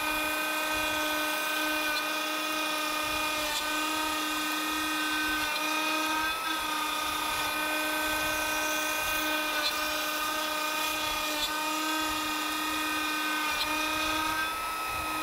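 A trim router on a desktop CNC, spinning at high speed while cutting plywood. It makes a steady, high-pitched motor whine, with small brief dips in pitch every couple of seconds.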